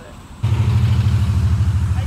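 A loud, low engine rumble with a fast, even pulse, like a motor idling, cutting in abruptly about half a second in.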